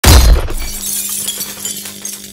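A single loud gunshot from a long gun, followed at once by glass shattering and debris tinkling down as the ATM's screen is blown apart. A steady low hum runs under the falling debris.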